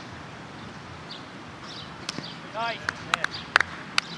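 A short shout about two and a half seconds in, among several sharp cracks, the loudest near the end.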